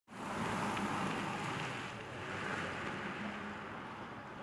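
A car driving past close by, its tyre and engine noise loudest in the first two seconds and then easing off.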